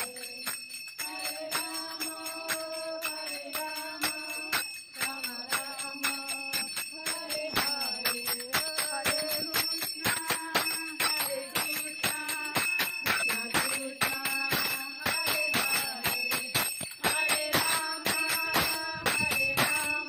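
A woman's voice sings a devotional kirtan chant through a handheld microphone, with a fast, steady rhythm of jingling metal percussion.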